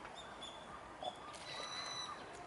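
Thin, high whistled calls of small birds: a few short ones, then a longer held call in the second half, over faint outdoor background noise, with one short louder sound about a second in.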